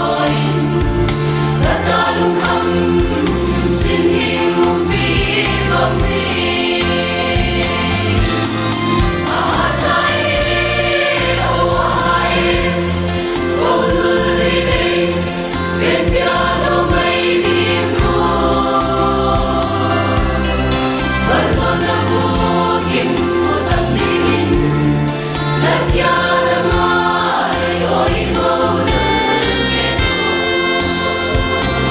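Mixed choir of women and men singing a gospel hymn in harmony, heard through stage microphones.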